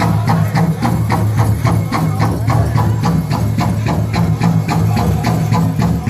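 Powwow drum group playing for a men's fancy dance: a big drum struck in a fast, even beat, about four strikes a second, under the group's singing.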